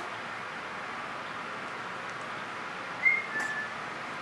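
A brief two-note high whistle-like chirp about three seconds in, the second note a little lower and longer, over steady background hiss.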